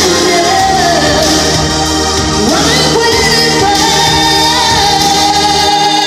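Woman singing live into a microphone over a backing track. About two and a half seconds in, the pitch sweeps upward, and then she holds one long note.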